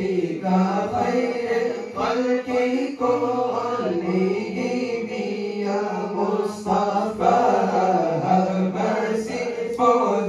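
Young men's voices chanting devotional verse into microphones, a melodic lead line rising and falling over a steady low note held beneath it.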